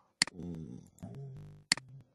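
Two sharp computer mouse clicks about a second and a half apart. Between them is a low, hummed voice sound with no words.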